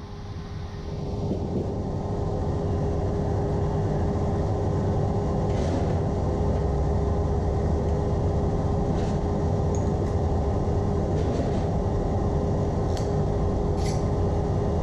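A steady low rumble with a constant mid-pitched hum, like running machinery or ventilation. It fades in over the first two seconds, then holds level, with a few faint clicks.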